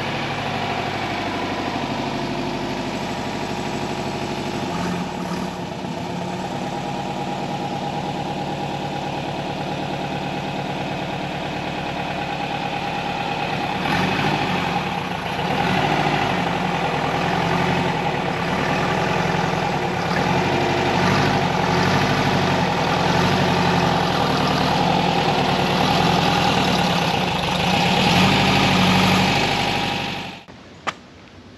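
A 1978 Volkswagen Westfalia camper's air-cooled flat-four engine runs at low speed as the van drives past, then reverses slowly toward the microphone. It grows louder about halfway through and is loudest just before it cuts off at the end.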